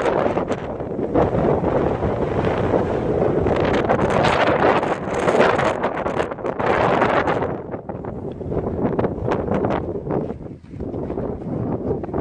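Wind buffeting the microphone in loud, rumbling gusts, easing off after about seven and a half seconds.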